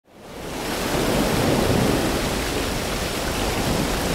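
Rushing, splashing white water, fading in over about the first second and then running as a steady, even rush.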